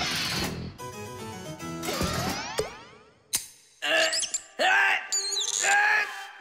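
A short cartoon music sting with sound effects: a swish, a run of quick notes and a sweeping glide, a sharp click about three seconds in, then quick high squeaky pitch glides near the end.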